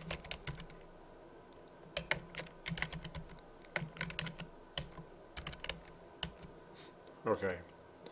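Computer keyboard typing: quick runs of keystroke clicks in short bursts, with brief pauses between words.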